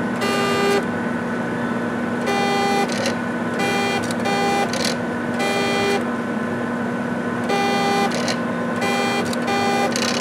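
HP 7673A autosampler tower and tray under test, their stepper motors giving short whines of one steady pitch, about eight in the stretch, some in quick pairs, as the mechanism steps through its moves, over a constant hum from the running instrument.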